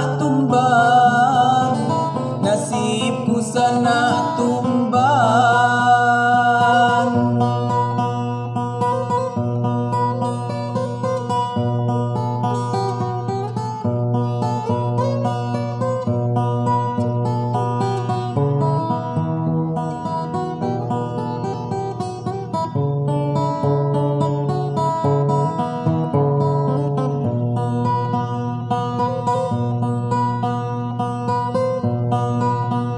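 Song in the Lampung language: a man sings over a guitar-led backing for the first several seconds, then the song continues as an instrumental passage.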